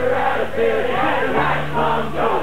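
Live bluegrass string band (fiddle, upright bass, banjo and acoustic guitars) playing through an outdoor PA, with voices singing along and the bass holding long low notes.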